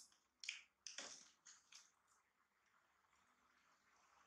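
Near silence with a few faint short clicks and rustles in the first two seconds, the small handling noises of someone passing dried fruit and snack packets from a plastic basket, then quiet room tone.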